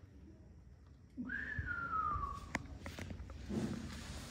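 A person whistling one falling note, about a second long, starting a little over a second in, followed by a light click.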